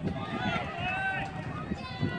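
Indistinct chatter of several voices talking and calling out, over steady outdoor background noise.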